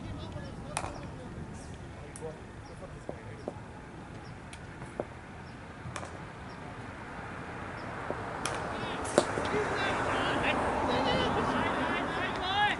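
A single sharp knock of a cricket ball being struck or taken, about nine seconds in. Players' voices rise right after it and grow louder toward the end.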